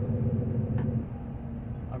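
Truck's diesel engine running steadily with road rumble while driving, heard from inside the cab.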